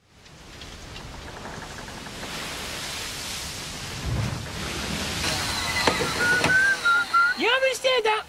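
Handheld vacuum cleaner running, its noise fading in and growing louder, with a steady whine from about five seconds in; a man's voice cries out near the end.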